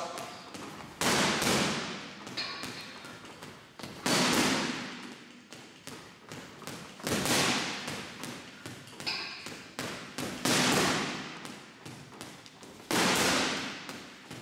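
Boxing gloves punching a Sting commercial-grade heavy bag: a steady patter of light punches, with a much louder hard shot about every three seconds, each echoing in the room as it dies away.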